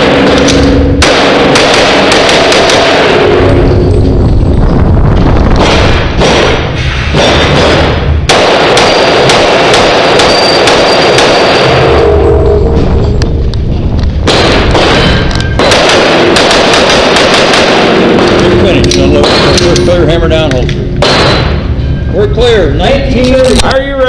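Pistol gunfire in quick strings of shots, broken by brief pauses, echoing in an indoor range and loud enough to overload the microphone.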